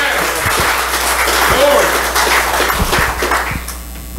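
Congregation applauding after a song, with a few short voices calling out over the clapping.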